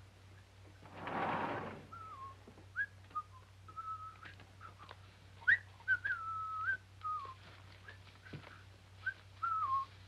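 A person whistling a short, wavering tune in repeated phrases. A brief rustling noise comes about a second in, and faint light knocks are scattered through.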